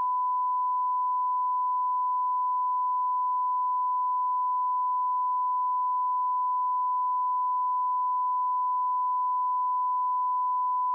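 A continuous electronic beep tone held at one steady pitch without a break, like a test tone or censor bleep.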